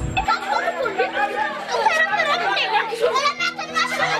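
Several children shouting and calling out over each other while playing, over background music with held notes.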